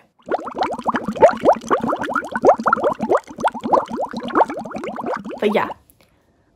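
Rapid bubbling, gurgling sound made of many short rising blips a second. It keeps going without a break for over five seconds, then stops.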